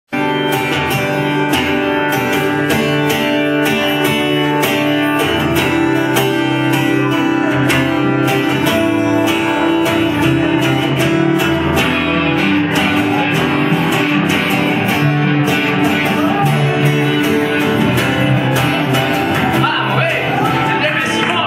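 Acoustic guitars strummed in a steady rhythm, a small band playing live without vocals; a singing voice comes in right at the end.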